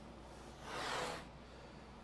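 Masking tape pulled off the roll in one short rip a little past halfway, as it is laid along a kayak hull.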